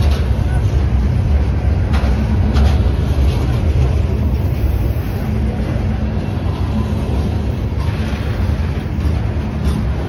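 Freight train of Herzog gondola cars rolling past close by: a steady low rumble of steel wheels on rail, with a few sharp clicks about two seconds in.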